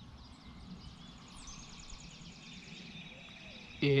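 Faint bird chirps and calls over quiet outdoor background noise with a low rumble.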